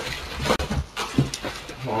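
Polystyrene and bubble-wrap packing rustling and scraping in a cardboard box as a heavy computer is worked loose, with a few short knocks and hard breathing from the effort.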